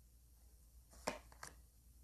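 Near silence with a few short, sharp clicks about a second in: one stronger click followed by two fainter ones.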